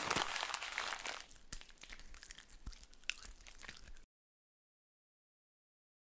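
Plastic instant-noodle wrapper crinkling as it is handled: a dense crackle in the first second, thinning to scattered crackles and clicks, then cutting off about four seconds in.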